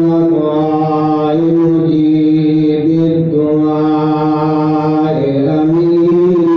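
A man's voice chanting in long held melodic phrases, sliding between notes, with a dip and rise in pitch near the end.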